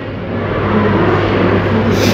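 Steady low background hum and noise, with a child's voice murmuring faintly for a moment in the middle.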